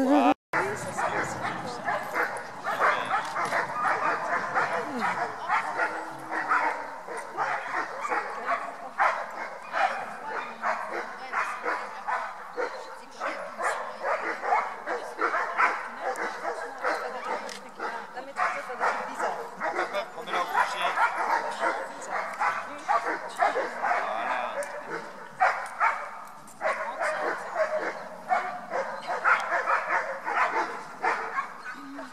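Dogs barking, yipping and whining, almost without pause.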